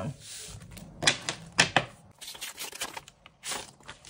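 Stiff paper game cards and scratch-off sheets handled on a wooden tabletop: a short sliding rustle at the start, then a scattering of sharp taps and flicks as cards are set down and picked up, the last about three and a half seconds in.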